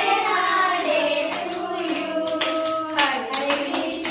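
A small group of women and children singing together while clapping their hands.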